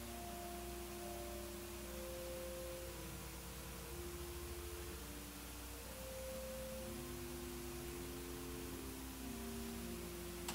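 Soft organ music: slow, held chords of pure-sounding notes that step to new pitches every second or two.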